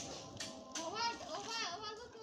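Children talking, their high-pitched voices rising and falling from about half a second in.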